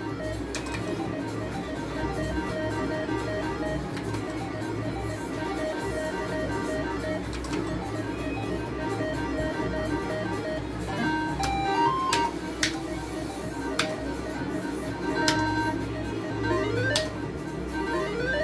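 Electronic game music from a Gold Fish slot machine: a looping plucked-string tune, with short runs of stepping beep notes about two thirds of the way in and again near the end.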